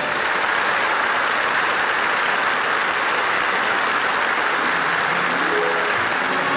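Studio audience applauding steadily, with faint orchestra notes coming in near the end.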